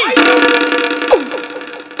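A steady, buzzy sustained tone held at one pitch for nearly two seconds, fading slightly towards the end, with a short sliding sound about a second in.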